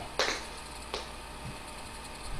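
Tap shoes' metal taps clicking on a wooden floor as he steps: a sharp click with a short ring after it, then a lighter click under a second later, and a faint low knock.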